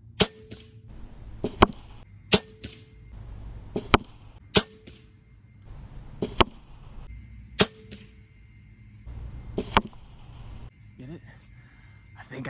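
A crossbow fired four times. Each shot is a sharp crack of the release, with a brief ringing hum from the string and limbs, and is followed a second or two later by a sharp thwack as the broadhead-tipped bolt strikes the block target.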